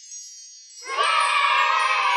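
A high shimmering chime sound effect fades out. About a second in, a louder celebratory chime effect with several ringing tones starts and keeps sounding.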